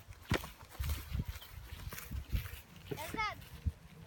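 A soccer ball kicked on grass, a sharp thud at the start and another strike just after, then scattered thumps of running feet and the ball on the turf. A boy's voice calls out briefly about three seconds in.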